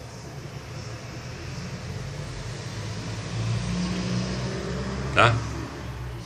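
Low rumble of a motor vehicle's engine, building over a few seconds and easing off slightly near the end.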